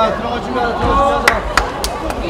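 Men's voices calling out across a football pitch, with a few short, sharp knocks in the second half.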